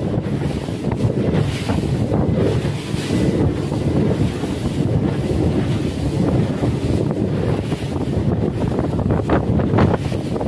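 Wind buffeting the microphone on a moving boat, over a steady low rumble of the boat running and water rushing past the hull.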